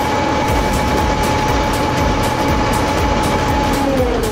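Ferry boat's engine running steadily while under way, mixed with water and wind noise and a steady high whine.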